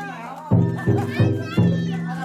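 Danjiri festival hayashi: a drum and bells struck in a quick beat of about three strokes a second, each stroke ringing on. Children's voices shout over it.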